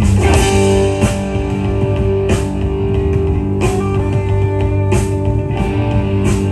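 Live rock band playing an instrumental passage: electric guitars hold ringing chords over bass and drums, with sharp drum-and-cymbal hits about every second and a bit.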